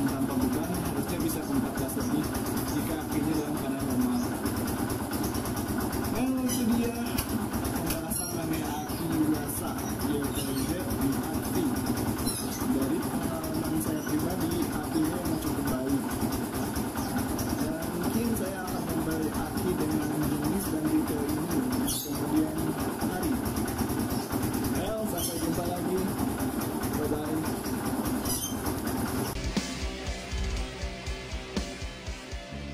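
Motorcycle single-cylinder engine running steadily, under background music with a singing voice.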